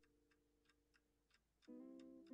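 Near silence with faint background music: a light ticking beat and a held chord dying away, then a new plucked, guitar-like chord entering near the end.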